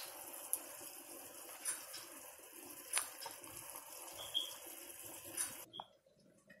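Faint, steady bubbling of crab-boil broth cooking in a large pot on the stove, with a few light clicks. It cuts off abruptly near the end.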